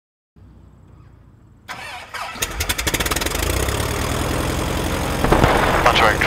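Aerobatic biplane's propeller engine starting: it turns over with a quick run of firing strokes, catches, and settles into a steady run that gets louder near the end.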